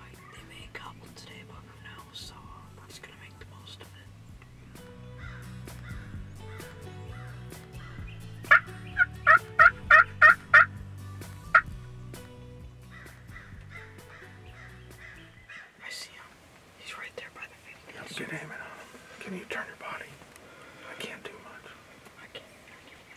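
Turkey yelping: a quick run of about seven loud, evenly spaced calls, with one more a second later.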